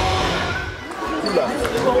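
Live sound of an indoor football match in a sports hall: a ball kicked and bouncing on the hall floor, a few sharp knocks in the second half, with shouts from players and spectators echoing around the hall.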